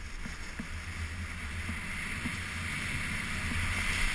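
Wind rushing over a camera microphone during a downhill ski run, with the hiss of skis sliding on packed snow; it grows gradually louder toward the end.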